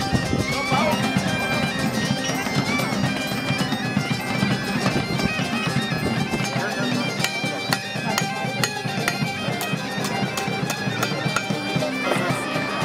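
Bagpipe music: a steady drone under a melody that steps between held notes.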